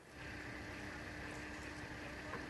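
Faint, steady city background noise with a low hum and a faint steady tone, as picked up by a live outdoor broadcast microphone.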